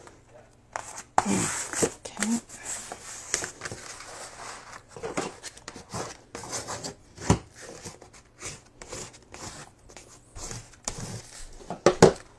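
Sheet of heavy watercolour paper being folded and its crease pressed flat, with irregular rubbing and crackling of the paper as hands and closed scissors slide along the fold against the tabletop.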